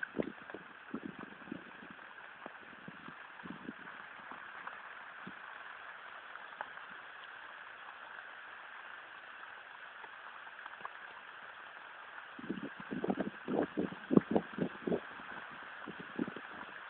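Steady hiss of rain falling at night in a thunderstorm. A run of sharp knocks comes about three quarters of the way through, hitting close to the microphone.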